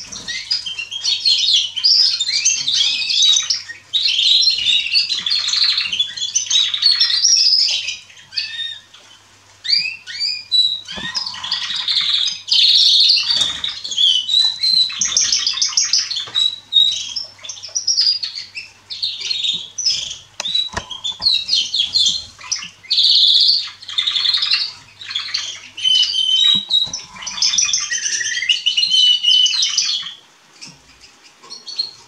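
Young canaries singing: long, nearly unbroken phrases of rapid warbles and trills, with a short lull about eight seconds in.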